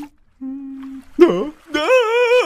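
A cartoon character's voice humming one steady note, then a sharp cry of "No!" and the start of a long, wavering, frightened scream near the end.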